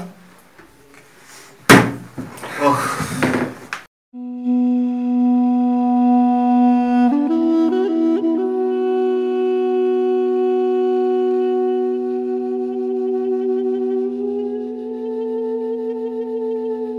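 A single sharp thump about two seconds in, then, after a brief silence, background music of long held notes over a steady low note, with the upper notes sliding in pitch near the end.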